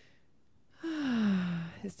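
A woman's audible sigh: a deep, voiced breath out that falls in pitch over about a second, after a faint breath in at the start.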